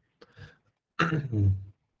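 A man clearing his throat once, about a second in.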